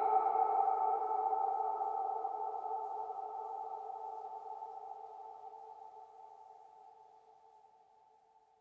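Electronic synthesizer tone closing a psytrance track. After the beat drops out, a sustained chord of a few steady pitches rings on and fades out evenly to near silence by the end.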